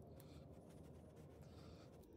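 Faint scratchy rubbing of a hex key turning a screw in a wooden knife handle, in two short spells, over a low steady hum.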